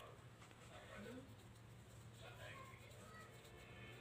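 Near silence: faint room tone with a steady low hum and faint, indistinct voices in the background.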